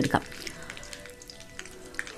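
Faint, steady sizzling of food frying in hot oil in an iron kadai.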